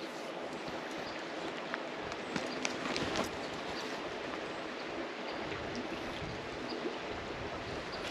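Steady rush of flowing creek water, with a few faint ticks around the middle.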